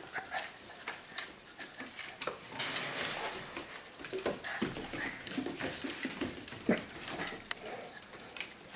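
Two puppies playing together, making short whines and yips, with their claws clicking and scrabbling on a tile floor.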